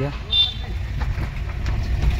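Hyundai Creta heard from inside the cabin, a steady low rumble of engine and tyres as it creeps along slowly. A brief high chirp sounds about a third of a second in.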